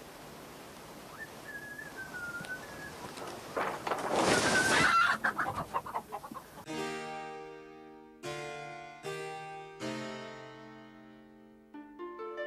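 A chicken calling with a wavering high cry, the loudest part about four to five seconds in. Then period-style harpsichord music starts, single plucked chords each ringing out and fading, about a second apart.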